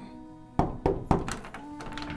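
Several sharp knocks on a wooden door, beginning about half a second in, over soft background music.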